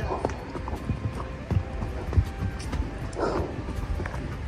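A horse's hooves clopping on a stony dirt trail as it walks, the knocks coming unevenly.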